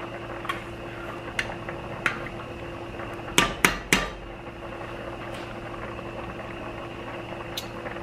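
A metal spatula stirring and scraping through thick sauce in an enamelled pot, clacking against the pot a few times, with a quick run of three sharp knocks about halfway through. A steady low hum runs underneath.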